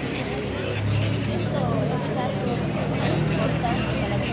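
Voices and chatter in a street crowd, with a vehicle engine's steady low hum coming in about a second in and running under the talk.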